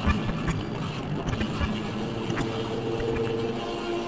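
Improvised experimental noise music from effects pedals and electric guitar: a dense rumbling, crackling texture with scattered clicks, and steady held tones emerging about halfway through.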